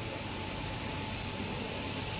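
Epoxy resin vacuum mixing machine running: a steady machine noise with a low hum, a faint steady whine and hiss.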